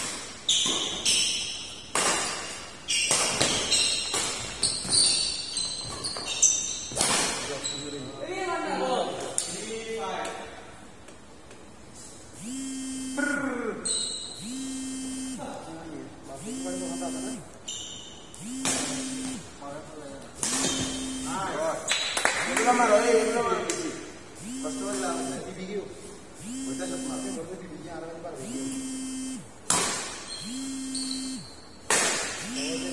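Badminton rally: sharp racket strikes on the shuttlecock and sneaker squeaks on the court mat, echoing in a large hall, over the first several seconds. After that come voices and a low electronic tone that repeats about once a second.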